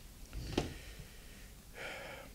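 Faint breathing from a man close to the microphone: a short breath with a small click about half a second in, then a soft intake of breath near the end.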